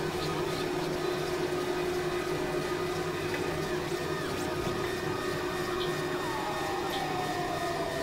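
Dense, layered experimental electronic drone music: several steady held tones over a noisy wash. About six seconds in, a tone starts sliding slowly downward in pitch.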